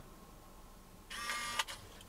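Small electric motor of a self-clamping phone holder running briefly, a high whir of about half a second starting about a second in and ending with a small click, as the holder's clamp arms move when it is switched off.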